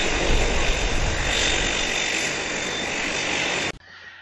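Twin turboprop engines of an Embraer EMB 120 Brasilia running on the ground with propellers turning, a loud steady noise that cuts off suddenly near the end and gives way to much quieter outdoor sound.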